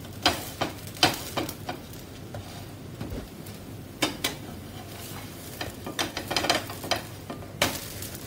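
A cheela sizzling in oil on a non-stick pan while a spatula scrapes and taps against the pan. The strokes come in clusters: several in the first two seconds, two about four seconds in, and a quick run near the end, when the cheela is turned over.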